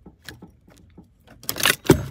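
Small metallic clicks of a nut on the back of a car instrument cluster being turned by hand. Near the end come a loud scraping rustle and then a sharp knock, as something slips under the dashboard.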